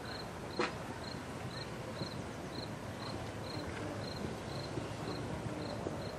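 A short, high chirp repeating evenly about twice a second, typical of a cricket, over steady background noise, with one sharp knock about half a second in.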